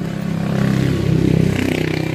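A motor vehicle's engine running close by, swelling to its loudest about a second and a half in and then easing off as it passes.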